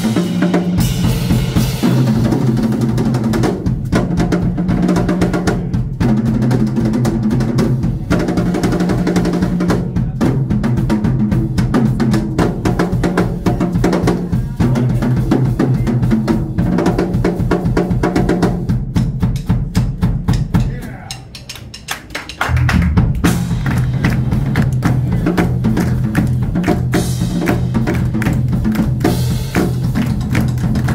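Live drum kit played hard by two players at once, the snare, toms, bass drum and cymbals struck in a fast, busy pattern over a repeating electric bass line. The music drops away for about a second and a half two-thirds of the way through, then comes back in.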